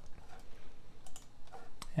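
Light, irregular clicks of a computer keyboard and mouse.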